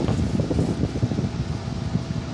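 Grow-tent fans running: a steady whooshing airflow noise, heaviest in the low end.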